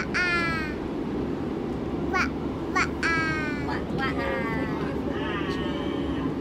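A toddler's high-pitched voice calling 'ba-ba-a' several times, over the steady low rumble of a moving train carriage.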